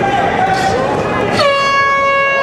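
Crowd shouting. About a second and a half in, an air horn starts one long, steady blast, the horn that ends the round.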